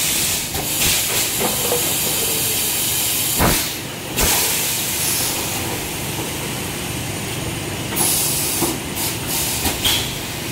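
Semi-automatic PET bottle blow-moulding machine working: a steady hiss of compressed air, with louder blasts of air venting near the start and about eight seconds in, and two sharp knocks about three and a half and four seconds in as the pneumatic mould moves.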